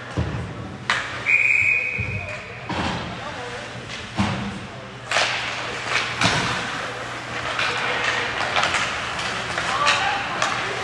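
Ice hockey play in a rink: sharp knocks of sticks and puck against the ice and boards, several times over. A short, steady high-pitched tone sounds about a second in, over a background of rink noise and voices.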